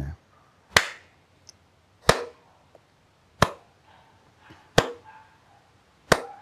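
Hand claps keeping time: four single claps evenly spaced about 1.3 seconds apart, marking the beats of a steady Carnatic laya with equal time between each beat.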